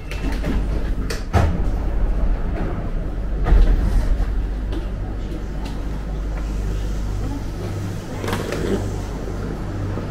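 Steady low hum inside a stopped airport terminal train carriage as passengers get off, with sharp knocks about a second and a half and three and a half seconds in. The hum changes to a different, pulsing low hum about eight seconds in.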